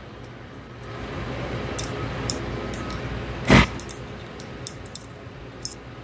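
A thin screwdriver prying an O-ring out of the bore of an aluminium pneumatic actuator body: faint scattered clicks and scrapes of metal on metal over a steady background hum. There is one short, loud rising squeak about three and a half seconds in.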